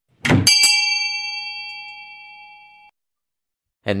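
A brief thud, then a single bright bell strike. It rings out with several clear tones and fades for about two and a half seconds before cutting off sharply.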